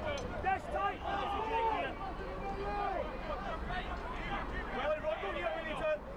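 Several voices shouting and calling across a soccer pitch during open play, overlapping and distant, over a steady low hum of stadium noise.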